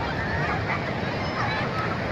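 Many distant voices of bathers calling and shouting over the steady wash of surf.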